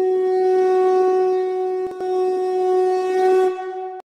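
A conch shell (shankh) blown in one long steady note, briefly broken about two seconds in before it sounds again, fading out near the end.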